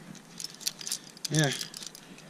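Metal climbing gear (carabiners and protection racked on a harness) jangling, a quick run of small metallic clinks as the climber moves.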